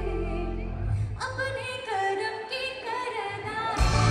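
A female singer singing live with an amplified band, her voice gliding between held notes. The bass drops away about a second in, and the full band comes back in loudly with heavy bass just before the end.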